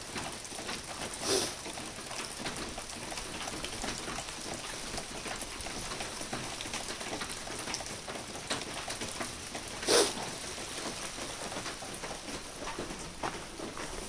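Steady rain pattering on wet concrete and puddles, with many fine drop ticks. Two louder short taps stand out, one about a second in and one about ten seconds in.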